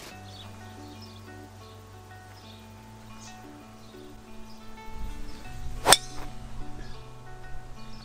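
Driver striking a golf ball off the tee: one sharp hit about six seconds in, over background music with steady held notes.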